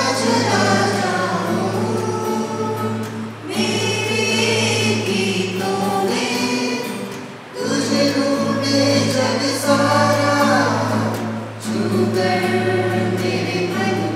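A mixed choir of men and women singing a song together in phrases of about four seconds with short pauses between, accompanied by an acoustic guitar.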